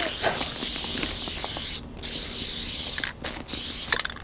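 Aerosol spray paint can hissing in three strokes while a graffiti tag is painted: one long spray of nearly two seconds, a second of about a second, and a short one near the end.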